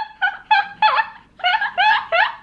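Two women laughing hard in rapid high-pitched bursts, about three a second.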